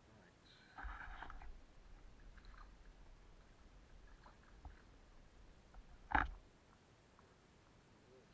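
Faint handling noise as a small RC boat is put into a shallow brook: a brief rustling rush about a second in, a low rumble, then one sharp knock just after six seconds in.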